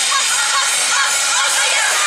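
Yosakoi dance music playing loudly over outdoor loudspeakers, with a troupe of dancers shouting calls over it.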